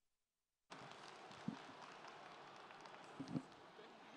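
Silence, then the sound cuts in abruptly to a faint, steady hiss of hall ambience picked up by a live microphone, with two dull thumps from the microphone being handled.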